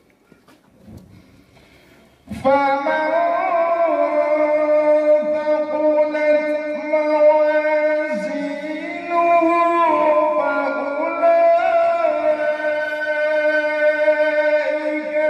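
A man's solo Quran recitation in tartil style. After about two seconds of quiet, his chanting voice starts suddenly and carries on in long held notes with ornamented turns in pitch.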